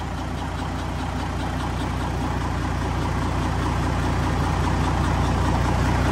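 Isuzu inline-six diesel engine running on a test stand, growing gradually louder.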